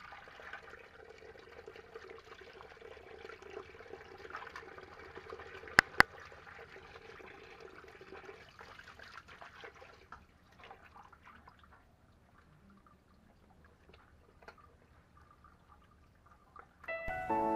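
Tap water running in a stream onto a fish as it is rinsed and rubbed by hand on concrete; the water stops about ten seconds in, leaving only faint handling noises. Two sharp clicks in quick succession just before halfway are the loudest sounds.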